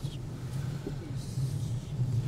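Low, steady rumble inside the cabin of a Geely Monjaro SUV rolling slowly.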